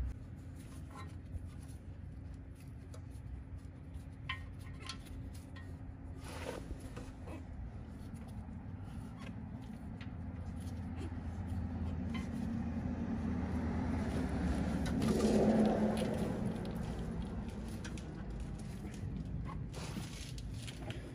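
Faint clicks and scrapes of a plastic diesel fuel filter being screwed by hand into its plastic housing, over a steady low hum; a louder noise swells up and fades again about three quarters of the way through.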